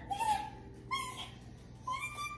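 A baby's short, high-pitched squeals and coos, three brief calls about a second apart, while being played with.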